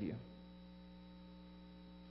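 Low, steady electrical mains hum: several constant tones held without change under a faint room hiss.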